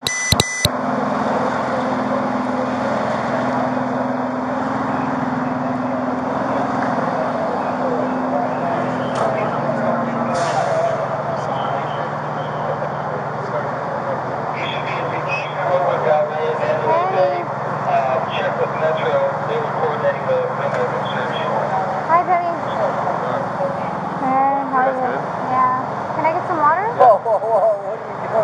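Idling emergency-vehicle engines give a steady hum under a noisy street background, with several people talking in the background from about halfway through. A brief electronic beep sounds right at the start.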